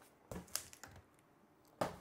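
A few light clicks and taps of a plastic filament-dryer base being handled, then a louder single knock near the end as it is set down on a wooden tabletop.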